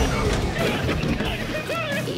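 Horror trailer soundtrack: dramatic score opening on a deep boom, under voices crying out in panic that waver in pitch near the end.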